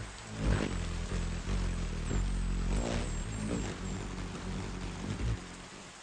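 Background music of low held notes that shift every second or so, over a steady hiss of rain.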